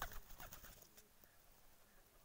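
Domestic pigeons cooing faintly, with a few sharp clicks near the start.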